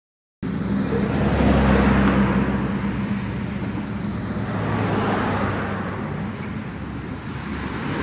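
Loud, steady rumble of motor-vehicle traffic noise, starting abruptly about half a second in and swelling and easing twice.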